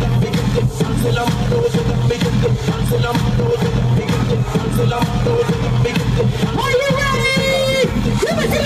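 Music from a DJ set played loud through the stage speakers, with a steady bass and beat. A wavering high melodic line comes in near the end.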